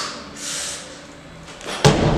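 Loaded barbell with rubber bumper plates dropped from overhead onto a wooden lifting platform, landing with a single loud thud near the end.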